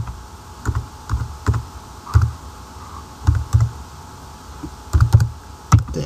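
Computer keyboard being typed: single keystrokes and short runs of clicks at an uneven pace, with a pause of about a second around four seconds in.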